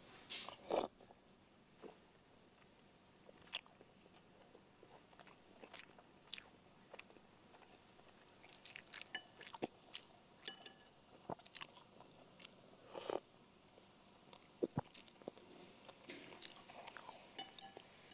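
A man chewing a mouthful of pempek, Palembang fish cake, eaten with broth: quiet mouth sounds of eating, with scattered small clicks of a spoon and fork against a bowl.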